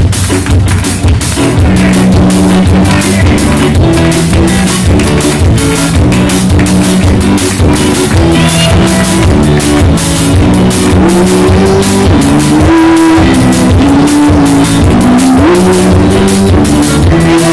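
Live band playing an upbeat pop-rock song: drum kit, electric bass, acoustic guitar and keyboard, with hand claps on the beat. The recording is overdriven and distorted.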